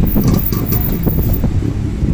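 A loud, irregular low rumble with no speech, of the kind made by wind buffeting the microphone or by handling of the camera.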